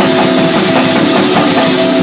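Live band playing loudly: a drum kit with cymbals ringing continuously and scattered drum hits, over steady held notes from other instruments.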